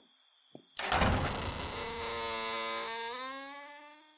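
Door sound effect: a sudden loud burst just under a second in, then a long creak that bends upward in pitch and fades away.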